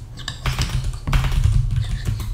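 Typing on a computer keyboard: a quick, uneven run of key clicks, over a steady low hum.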